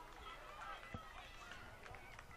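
Faint, distant voices of people shouting and talking across an open soccer field, with one short tap about halfway through.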